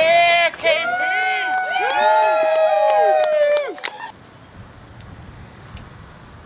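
Several high-pitched voices shouting and calling over one another, each call rising and falling in pitch, for about four seconds; then it stops suddenly, leaving faint outdoor background noise.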